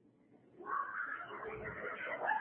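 A brief hush, then about half a second in an audience breaks into laughter that carries on.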